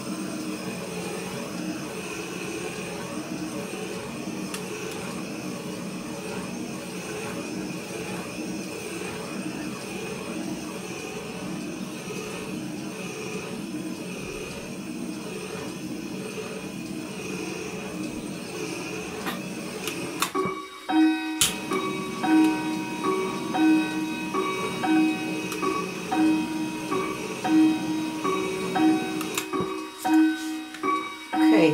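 Handheld butane torch flame hissing steadily as it is passed over wet acrylic pour paint, the heat bringing the silicone cells up to the surface. About two thirds of the way in the hiss cuts off and background music with a light, regular melody takes over.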